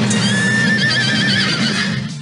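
A horse whinnying: one long, high whinny that wavers up and down, beginning just after the start and lasting about a second and a half.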